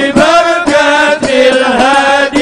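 A voice chanting an Arabic supplication in a slow melodic style, holding long notes that waver in pitch, with a short break between phrases near the end.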